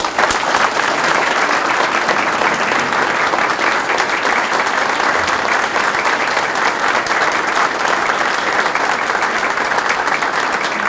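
Audience applause, breaking out all at once and holding steady, after an a cappella choir's song.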